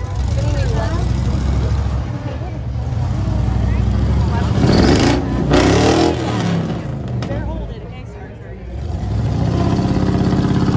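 Monster truck engine revving hard as the truck drives up onto a pile of crushed cars. The engine is loudest about five to six seconds in, eases off near eight seconds, and revs up again near the end.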